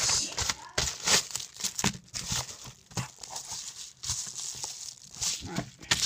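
A kraft paper mailer envelope being torn open and its packaging handled: irregular crinkling and rustling with short sharp crackles.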